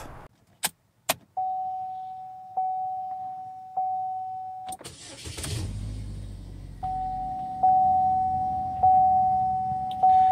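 Two clicks, then a car's dashboard warning chime dinging about once a second. About five seconds in, the 2014 GMC Terrain's engine is started and settles into idle, with the chime dinging again over it.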